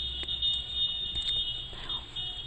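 Steady high-pitched electrical whine with a low hum underneath, the constant background noise of the recording setup, with a few faint clicks.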